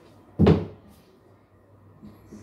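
A single sharp thump about half a second in, loud and dying away quickly.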